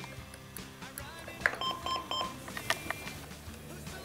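Three quick electronic beeps from a LifePak 15 monitor/defibrillator, about halfway through, while its speed dial is used to enter patient details for a 12-lead ECG. Quiet background music plays underneath, with a few faint clicks.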